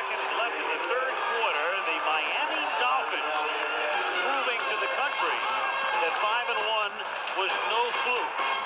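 Several voices talking over one another on a recorded radio talk show, with no single clear speaker.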